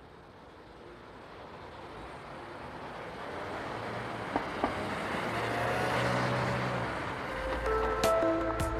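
A swelling rush of noise that grows steadily louder, with two short clicks about halfway and faint held tones joining in the second half, building up to music that starts at the very end.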